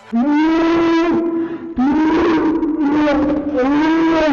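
A woman screaming in fright: three long, loud, high-pitched screams, each held at a steady pitch and falling off at the end. The second breaks in sharply a little under two seconds in, and the third starts near the end.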